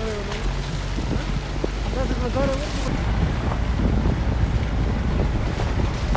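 Wind buffeting the microphone: a steady low rumble of noise, with faint voices about two seconds in.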